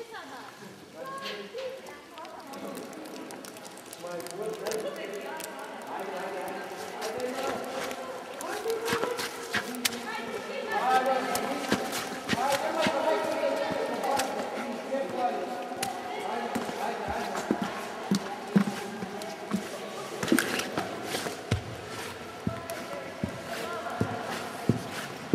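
Several people talking indistinctly, voices overlapping and busiest in the middle, with scattered short knocks in the second half.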